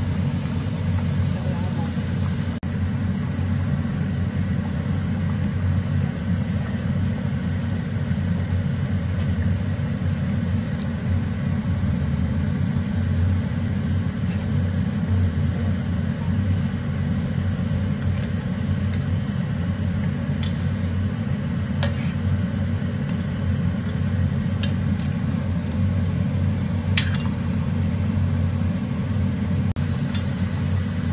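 Steady low rumble of a gas stove at work, with a few light clicks of a metal ladle against an enamelled cast-iron pot.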